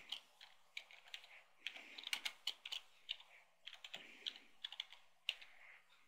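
Faint typing on a computer keyboard: a run of irregular keystroke clicks, with short pauses, as a short phrase is typed.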